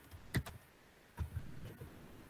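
Typing on a computer keyboard: a handful of separate, fairly faint keystrokes.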